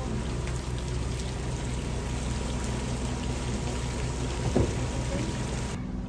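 Steady rushing, rain-like noise of water over a low engine hum, with one brief louder sound about four and a half seconds in; the sound cuts off abruptly near the end.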